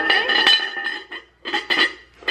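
Ceramic lid of a pumpkin-shaped casserole dish clinking against the dish as it is lifted and set back, with a short ringing tone in the first half second and another clatter about one and a half seconds in.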